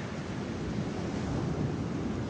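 Steady rushing outdoor noise of wind and the sea, with low rumbling gusts on the microphone.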